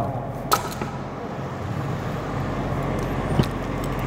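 Steady low outdoor rumble like a vehicle engine running nearby, with a sharp click about half a second in and a fainter one near the end.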